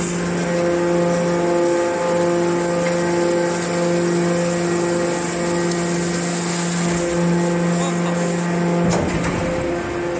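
Hydraulic metal compactor running, with a steady mechanical hum from its pump motor. A brief knock comes near the end.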